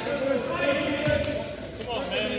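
Voices calling out in an echoing school gymnasium, with a few dull thuds, one of them about halfway through.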